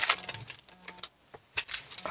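Foil wrapper of a Pokémon booster pack crinkling and crackling in the hands as the cards are pulled out: scattered sharp crackles, loudest at the start and thinning out.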